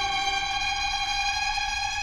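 Background score music: a sustained, tense chord of many steady held tones with no melody or beat.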